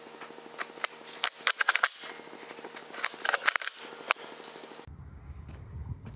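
A freshly shot rabbit kicking and scrabbling in dry leaves and gravel in its death throes: irregular bursts of rustling and scratching clicks, heaviest in the second and fourth seconds, over a steady low electronic buzz. Near the end the buzz stops and a low rumble takes over.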